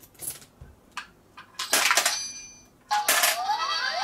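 Coins dropped into a toy ATM-shaped coin bank, the Animal Crossing Tanuki Port bank: a few light clicks, then two loud clattering coin drops with a ringing tail. Near the end the bank's electronic sound effect starts with rising tones.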